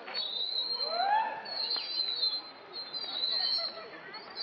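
Outdoor park ambience: high-pitched chirping in short repeated stretches, with faint distant voices and one rising call about a second in.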